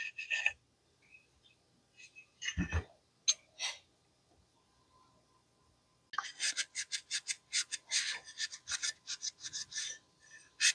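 Faint clicks of shotgun parts being handled, a dull knock about two and a half seconds in, then, from about six seconds in, a run of quick rubbing strokes, a few a second: a cloth wiping down the shotgun's receiver.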